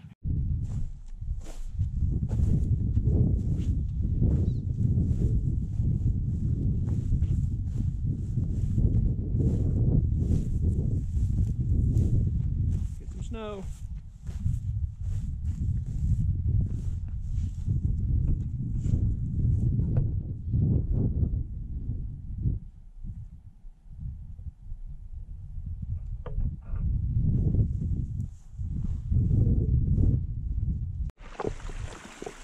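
Wind buffeting the microphone, with footsteps crunching on rocky ground as a string of short ticks through the first half.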